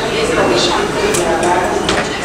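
Voices talking on a busy railway station platform, with two sharp clicks in the second half.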